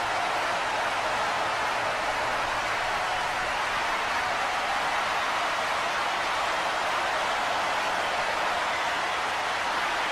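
Steady, even hiss-like noise that does not change, most of it in the middle range, like filtered white noise.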